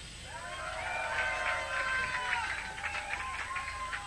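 A voice speaking at the microphone between songs of a live punk show, quieter than the band, on a cassette recording with a steady faint hum underneath.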